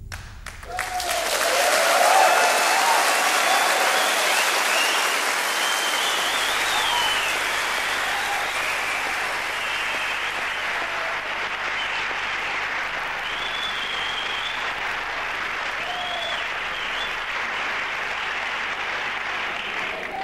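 Concert audience applauding, cheering and whistling as a song ends, swelling to its loudest about two seconds in and then slowly tapering off.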